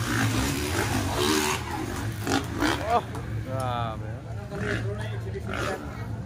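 Motocross dirt bike engines revving on the track, with one rev rising sharply about halfway through and a wavering engine note just after it.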